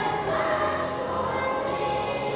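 Children's choir singing, holding long notes that change pitch.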